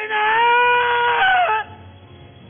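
A man's voice through the church microphone holding one long, high note for about a second and a half. It slides up into the note at the start and drops away at the end.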